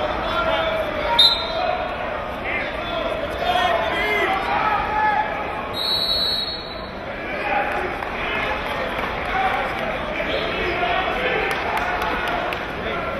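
Crowd chatter echoing in a gymnasium during a wrestling bout, with a sharp slap about a second in. A referee's whistle sounds once, high and steady, for about a second near the middle.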